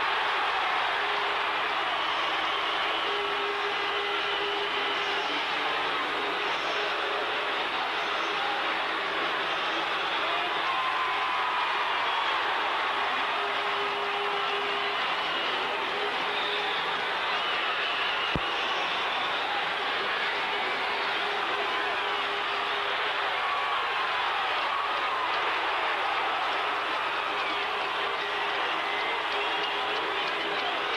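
Ice hockey arena crowd cheering and shouting steadily during a fight on the ice, single voices yelling through the dense din, with one sharp click about eighteen seconds in. The sound is dull and lacks treble, as on an old tape recording.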